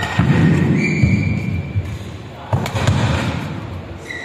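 Badminton rally: sharp racket strikes on the shuttlecock, one near the start and another about two and a half seconds in, echoing in a large hall, with players' footwork on the court and a brief high squeak about a second in.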